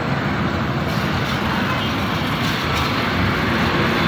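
Busy highway traffic passing close by: a large truck and other vehicles going past, with a loud, steady rumble of engines and tyres.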